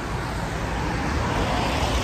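Road traffic on a rain-wet street: steady noise of cars driving past, with a low rumble, swelling slightly about a second in as a car goes by.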